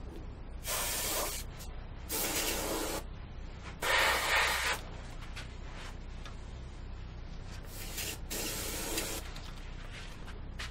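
Suction-fed airbrush spraying spirit stain in about five short hissing bursts. The loudest and longest burst comes about four seconds in.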